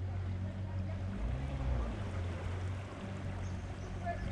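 A boat's motor running with a steady low hum, its note shifting briefly about a second in.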